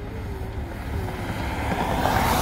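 Road-traffic rush from a vehicle approaching on the road, growing louder toward the end, over a heavy rumble of wind buffeting the microphone.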